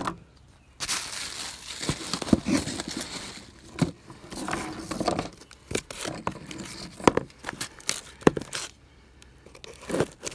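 Crinkling and rustling of a package wrapped in shiny packing tape being handled in gloved hands, with many sharp crackles and clicks; it stops about a second before the end.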